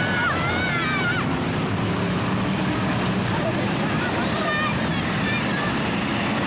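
A field of stock cars racing on a dirt oval, their engines running together in a loud, steady drone. Voices from the grandstand shout over it near the start and again about four seconds in.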